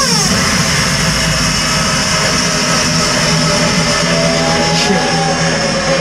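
Loud electronic dance music from a festival sound system during a DJ set. A synth tone slides sharply downward at the start, then a dense hissing noise wash runs over a held low bass note, with short gliding synth tones in the second half.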